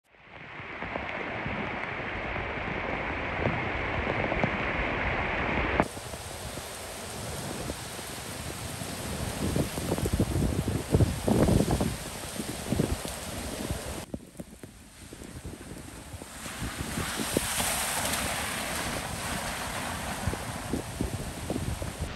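Strong gusty wind thrashing through trees and palm fronds with rain, ahead of a tropical cyclone, with wind buffeting the microphone in loud surges. The sound changes abruptly twice, about six and fourteen seconds in, as different shots are joined.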